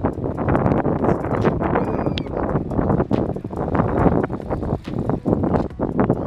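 Wind buffeting the microphone: a loud, irregular rumbling noise.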